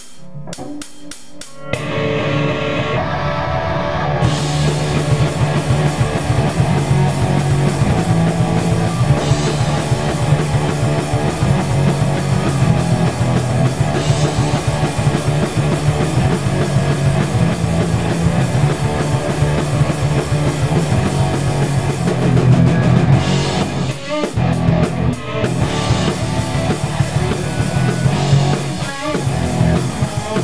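A rock band playing live in a small rehearsal room: drum kit and electric guitars. A few sharp clicks open it, the full band comes in about two seconds in, and there is a short stop-start break about three quarters of the way through.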